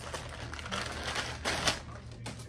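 Clear plastic clothing bag crinkling and rustling as a dress is pulled out of it, loudest about a second and a half in.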